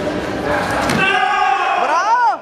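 During a karate bout, a couple of sharp slaps or stamps, then a loud, drawn-out shout that rises and falls at its end, over voices in a large hall.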